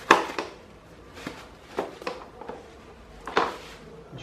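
Handling noise from taking apart a floor fan: a few short knocks and rustles of plastic housing parts and paper. The loudest comes at the very start, another just past three seconds in.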